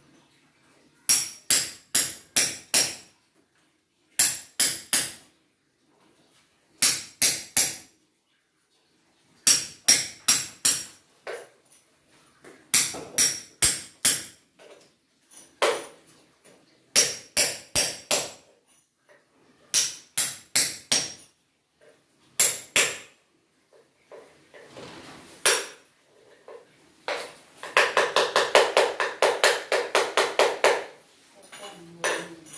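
Hand hammer chipping at concrete at the base of a door opening: short bursts of three to five sharp blows with pauses between them, then a faster run of strikes near the end.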